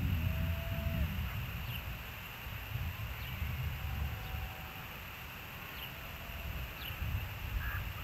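Gusty low rumble of wind on an outdoor nest-cam microphone, rising and falling, with a few faint, short, high bird chirps.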